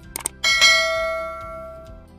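Subscribe-animation sound effect: a quick double click, then a bright notification-bell ding about half a second in that rings out and fades over about a second and a half.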